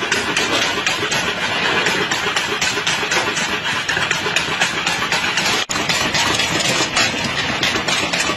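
Motor-driven bamboo-processing machine running steadily, with a dense rapid clatter as bamboo is fed through it.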